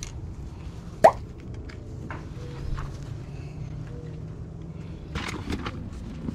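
Clothes on hangers being pushed along a rack: fabric rustling and hangers clicking, with one sharp click about a second in and more clicking near the end. Faint music plays underneath.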